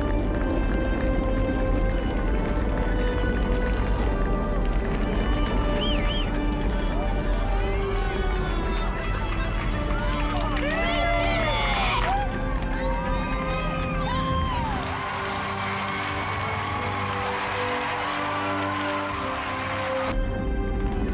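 Space Shuttle launch rumble from the solid rocket boosters and main engines, under music with long held notes, while people whoop and cheer. About fifteen seconds in the deep rumble drops away, and a crowd's cheering and applause goes on under the music.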